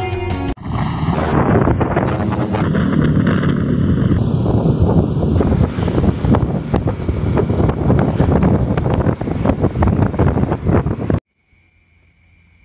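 Heavy wind buffeting the microphone on a moving motorcycle, a loud, even rushing noise that cuts off suddenly about a second before the end.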